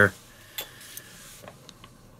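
Faint light ticks and scraping of sharp metal tweezer tips picking at a small painted model part, chipping off the paint over a hairspray layer; a few separate ticks come about halfway through and near the end.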